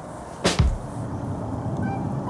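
A single whoosh transition sound effect about half a second in, sweeping down into a short low thud, followed by a faint steady background.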